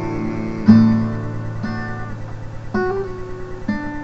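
Acoustic guitar strummed, a chord struck about once a second and left to ring, four strums in all, the first the loudest.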